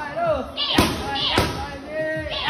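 Two punches, a jab and a cross, slapping into Muay Thai pads about half a second apart, each with a short hissing exhale just before the impact.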